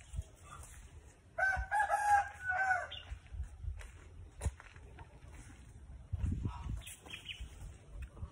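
A rooster crowing once, a single call of about a second and a half in several linked parts, ending with a falling note. Low thumps and a sharp click follow it.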